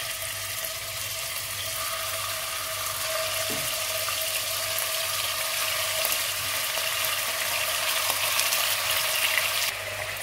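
Chunks of raw beef sizzling in hot oil in a pot, a steady hiss that grows louder as more pieces are dropped in.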